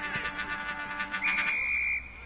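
Several car horns sounding together at different pitches, held steady for about a second and a half. A higher, shrill steady tone takes over near the end and is the loudest part.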